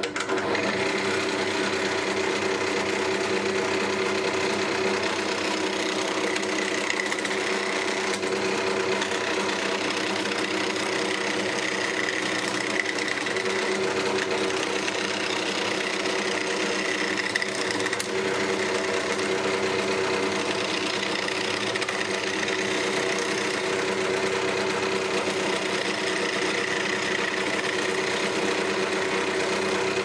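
Wood lathe switched on right at the start and running steadily with a humming motor, while a skew chisel cuts a spinning ash spindle blank.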